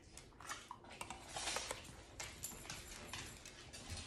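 A spoon lightly clicking and scraping in a stainless steel bowl as soft food is shaped into small meatballs, with many faint, irregular taps.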